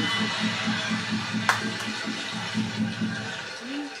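Playback of a stand-up comedy recording: a low pulsing sound repeating about four to five times a second under a steady noisy wash. The pulsing stops about three seconds in.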